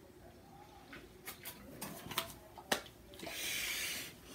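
A person drinking juice from a bottle, with several small gulping clicks as she swallows, then a loud breath out near the end.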